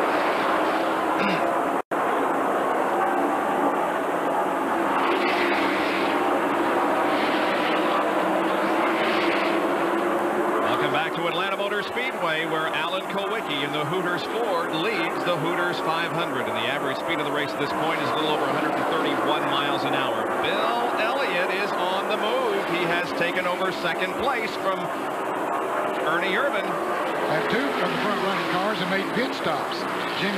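NASCAR stock cars' V8 engines running at speed on track, with a brief audio dropout about two seconds in. Indistinct voices join over the engine sound from about a third of the way in.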